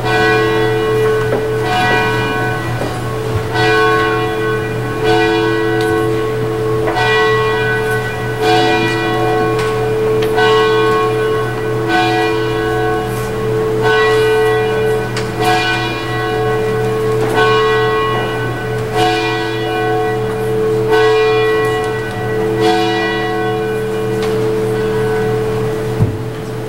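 Church bell tolling, struck about every second and three-quarters, each stroke ringing on into the next, over a steady low hum.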